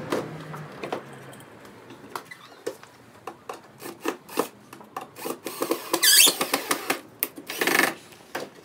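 Cordless drill working into the wooden top of a nuc box: short drill runs and knocks of wood and tool handling, with two louder bursts of drilling about six seconds in and near the end.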